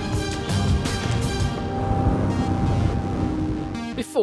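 Background music with a regular beat that drops out about halfway, leaving held chords.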